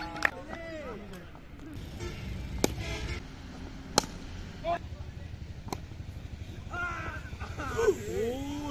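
A single sharp crack of a cricket bat hitting the ball, about four seconds in, the loudest sound here. Scattered shouts from players on the field come before and after it, with a couple of fainter knocks.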